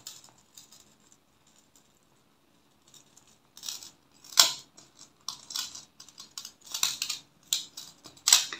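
Fine metal chain and glass crystal beads being handled on a tabletop. Quiet at first, then from about three and a half seconds a run of light clicks and rustles, with one sharper click about halfway through.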